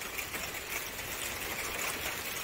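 Steady rain falling, an even hiss of heavy drops as a shower comes on.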